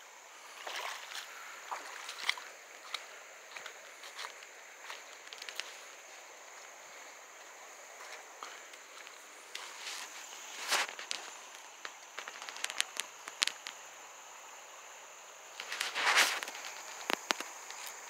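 Footsteps crunching on dry fallen leaves and gravel along a creek bank, irregular, with louder crunches about eleven seconds in and again near the end, over a steady faint high-pitched hiss.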